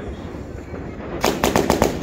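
Fireworks4all Treasure Hunter multi-shot fireworks cake firing: about a second in, a rapid run of around seven sharp launch cracks in under a second.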